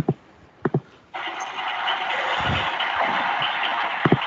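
A few sharp clicks, then a loud, steady hiss of noise over the video-call audio. The hiss starts suddenly about a second in and lasts about three seconds.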